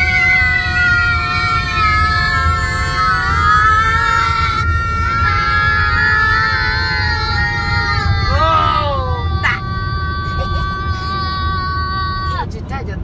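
Several long, high, slightly wavering voice-like tones overlapping one another, with a few short falling glides near the end, over the steady low road rumble of a car driving through a road tunnel.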